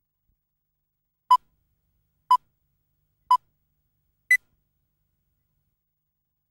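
Four short electronic beeps a second apart: three at the same pitch, then a fourth an octave higher. It is a countdown tone that marks a start.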